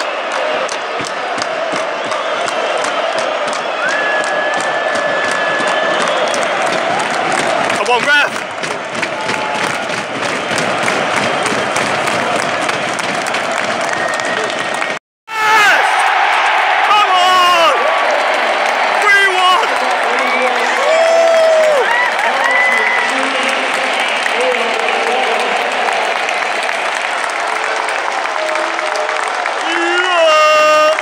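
Large football stadium crowd, thousands of fans cheering and singing to celebrate a win. The roar of voices cuts out briefly about halfway through, then returns louder, with chanting and singing voices standing out.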